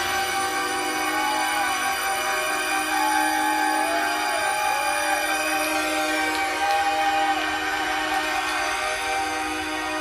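Electronic synthesizer music without drums: a steady low drone held under several sustained higher tones, some of which slide slowly up and down in pitch.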